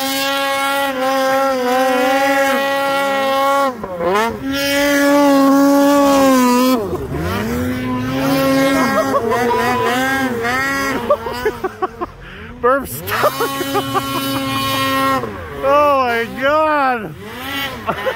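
Snowmobile engine revving hard in deep snow, held high for a few seconds at a time, then dropping and climbing again. Near the end comes a run of quick throttle blips.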